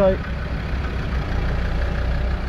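Land Rover's engine running at low revs, a steady low drone heard from inside the cab as it creeps along.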